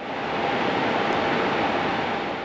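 Steady, even rushing noise of a hydroelectric generating unit running, with a faint steady hum-like tone above it.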